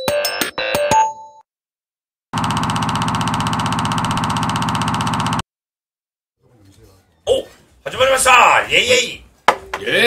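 An electronic music jingle ends about a second in. After a gap comes a steady, buzzy electronic tone of about three seconds that stops abruptly. Several people then start talking in a small studio.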